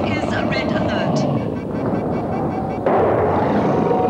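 Science-fiction sound effects: a steady low rumble under a voice for the first second, then a sudden louder rush of noise about three seconds in as the alien creature rises.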